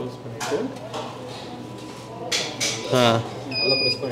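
Rotating waffle maker beeping once near the end, a steady high electronic tone about half a second long, as the batter-filled iron is closed and turned over.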